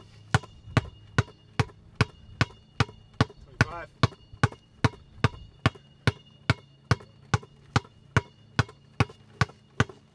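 A basketball dribbled hard on asphalt: sharp, evenly paced bounces, about two and a half a second.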